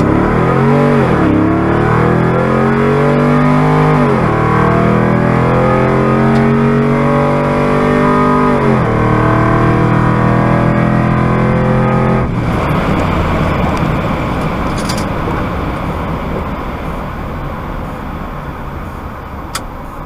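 Supercharged Toyota Tundra V8 at full throttle on a quarter-mile drag run, heard from inside the cab: the engine revs climb and drop sharply at each upshift, about a second in, near 4 s and near 9 s. About 12 s in the driver lifts off, and wind and tyre noise fade as the truck slows.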